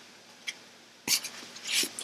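An eyeshadow palette being pushed out of its clear plastic sleeve: a sharp click about a second in, then a short rustling slide of plastic.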